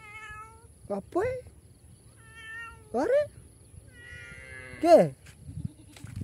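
A cat meowing several times in short calls that swoop in pitch, the loudest one near the end falling steeply.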